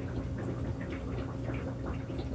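Steady low hum with a faint watery trickle from aquarium equipment running, a filter or pump.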